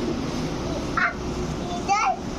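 A crow cawing twice, with short harsh calls about a second in and near the end, over a steady low background hum.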